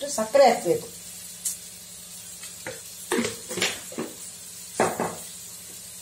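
Chopped beans and vegetables sizzling in an iron kadai over a gas flame, with a handful of short, sharp clinks and scrapes of a utensil against the pan.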